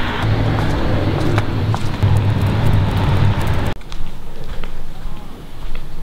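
A car passing on the street close by, its engine and tyre noise steady. The noise cuts off abruptly a little under four seconds in, leaving quieter outdoor background.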